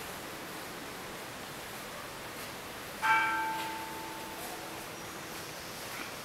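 A metal bell struck once about three seconds in, ringing with several clear tones that fade over a second or two, over a steady faint hiss of room noise.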